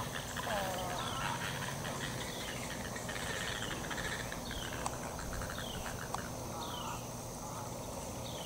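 Birds calling in the tree canopy: a short high note sliding downward repeats about once a second, over rapid chattering and a steady high whine. A lower, wavering call sounds in the first second, and two faint clicks come past the middle.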